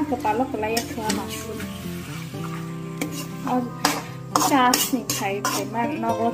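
A metal spoon scraping and knocking against an aluminium kadai as masala-coated chicken pieces are stirred, with a light sizzle of frying. Background music with a sung melody plays throughout; the spoon strokes come thickest about four to five seconds in.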